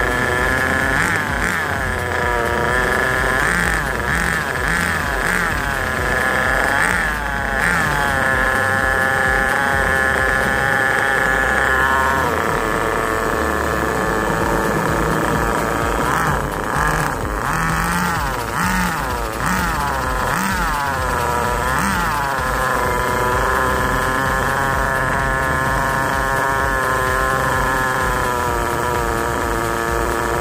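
Small nitro (glow-fuel) engine of a 1/10-scale VRX buggy running on a stand with its wheels off the ground, its throttle blipped over and over so the pitch rises and falls. In the last part it settles to a steady idle.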